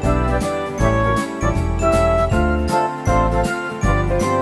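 Background music: a bright, jingling tune over a steady beat and a bass line.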